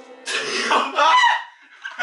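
A man's loud, cough-like burst of laughter, lasting about a second and breaking off well before the end.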